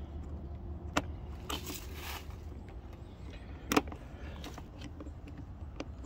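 A screwdriver clicking and scraping against the metal bracket of a car door's armrest pull handle as it is worked loose: a sharp click about a second in, a short scrape, and a louder click near four seconds, over a low steady hum.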